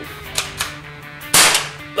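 A single loud, sharp shot-like crack about a second and a half in, with a faint click before it, over quiet background music.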